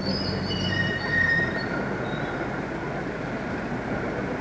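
Train running on the rails with a steady rumble, with high metallic wheel squeals over the first couple of seconds; the sound cuts in suddenly.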